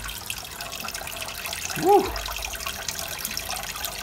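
Steady trickling and splashing of aquarium water, the filter's outflow stirring the tank surface. A short voiced "woo" cuts in about halfway through.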